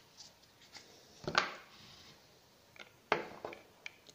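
Handling noise from a small box mod being turned over in the hands and set down: a few short clicks and knocks, the loudest about a second and a half in and another about three seconds in.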